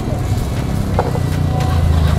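Motorbike engines idling, a low steady rumble that grows louder near the end.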